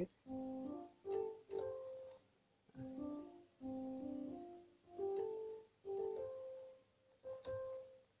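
A piano keyboard played with one hand: about seven short phrases of a few held notes each, stepping up and down in pitch, with brief pauses between them.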